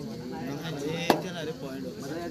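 Voices calling out over the play, broken about a second in by one sharp slap, the loudest sound.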